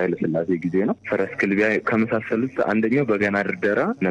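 A man speaking in Amharic, continuous narration with no other sound standing out.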